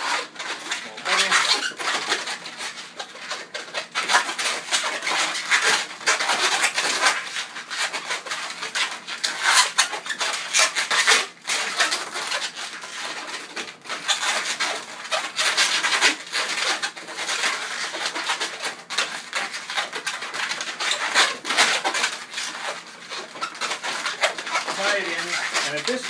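Latex 260 modelling balloons squeaking and rubbing against each other as they are twisted and woven by hand: a dense, irregular run of squeaks and creaks that never stops.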